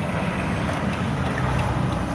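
Steady road and wind noise of a moving car heard from inside its cabin, an even rushing rumble with no distinct events.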